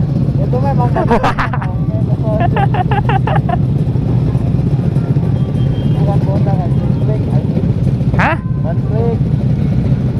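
Motorcycle and scooter engines idling together in a tightly packed group stopped in traffic, a steady low rumble. A voice speaks over it at times, and there is one short sharp burst of noise a little after eight seconds.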